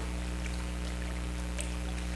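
Pause in speech: room tone with a steady low electrical hum.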